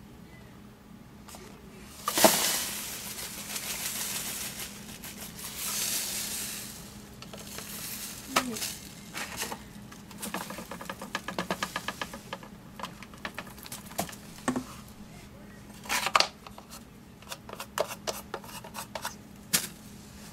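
Plastic dustbin and brush housing of a Roomba 530 robot vacuum being handled and emptied over a bag-lined trash can: rustling, then plastic clicks and knocks. A quick run of clicks comes about halfway through, and there are louder knocks near the end.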